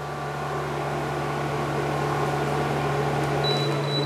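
xTool P2 55W CO2 laser cutter running a cut: a steady mechanical hum of its fans and air assist, swelling slightly at first. About three and a half seconds in, a low rumble drops out and a thin high tone starts.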